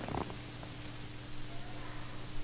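Steady low electrical hum from a sound system, with one short handling noise just after the start as altar vessels are moved.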